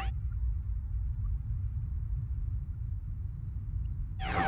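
A low, steady electronic rumbling drone, the background sound bed of a title card. Right at the start the tail of a rising electronic swoosh, a transition sound effect, dies away.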